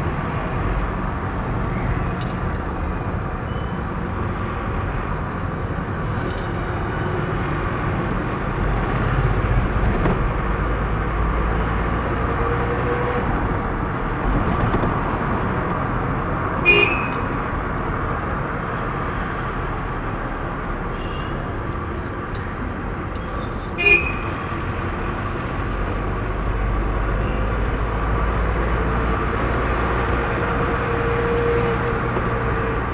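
Steady engine and road noise from inside a moving vehicle in traffic. Two brief horn toots cut through it, one a little past halfway and another about seven seconds later.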